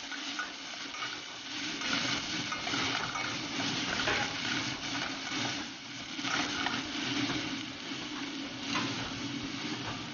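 Chopped onion sizzling in hot oil in a stainless steel pot, stirred and pushed around with a slotted spatula, with brief scraping strokes now and then.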